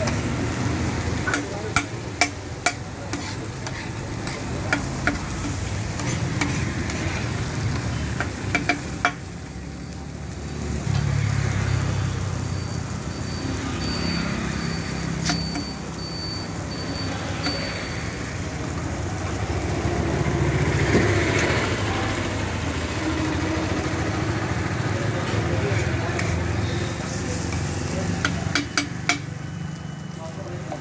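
Metal spatula clacking and scraping on a hot flat iron griddle as chopped tomato and onion fry with a sizzle. The sharp clacks come thick in the first nine seconds and again near the end, with steadier sizzling and scraping between.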